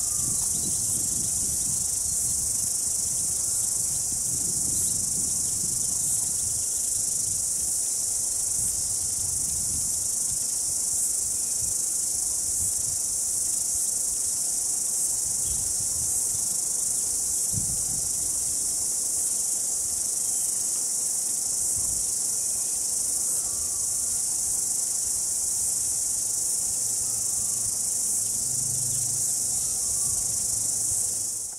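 Steady, high-pitched insect chorus that runs without a break, with faint low rumbles underneath.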